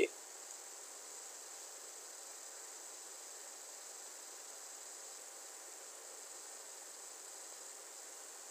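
Steady faint hiss with a thin, high-pitched whine, unchanging throughout: the background noise of the narration microphone between spoken sentences.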